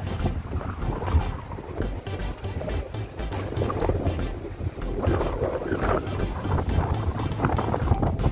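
Wind buffeting the microphone: a steady low rumble with irregular gusts, over the sea below.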